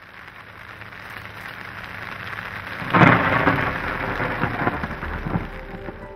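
Steady rain, then about three seconds in a sudden loud thunderclap from a close lightning strike to a television antenna mast, rumbling away over the next two seconds.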